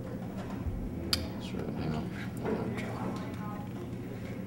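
Room tone in a small room with a steady low hum and faint, indistinct voices in the background. A single sharp click comes about a second in.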